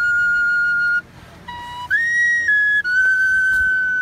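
A small wooden flute playing a slow solo air of long held notes. About a second in it drops to a short, quieter low note, then the melody jumps higher and settles back down through a few held notes.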